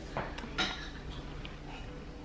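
Quiet sipping of a thick smoothie through a stainless-steel straw in a glass, with a few faint clinks of the metal straw against the glass in the first half-second.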